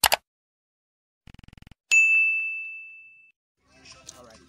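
Subscribe-animation sound effects: a short sharp burst at the start, a quick rattle of clicks about a second and a half in, then a single notification-bell ding that rings down over about a second and a half.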